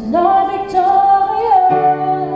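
A woman singing one held, slightly wavering note over piano chords. Near the end the voice stops and the piano moves to a new, lower chord.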